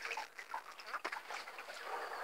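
Faint breathing of a man smoking a cigarette, drawing on it and then exhaling, with a few small clicks.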